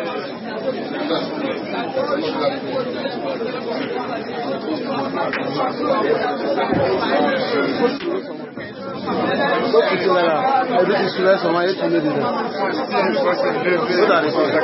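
Many voices praying aloud in French at the same time, overlapping into a continuous babble with no single voice standing out. It dips briefly about eight seconds in, then picks up again.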